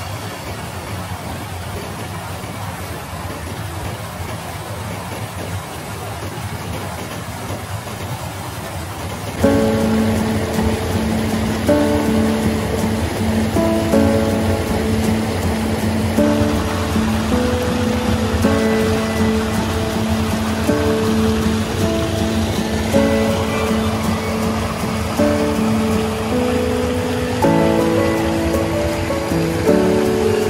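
Steady rushing of a small creek waterfall. About nine seconds in, background music with long held notes comes in louder over it and plays on.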